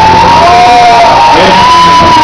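Live band music with a voice holding one long, high note over the accompaniment.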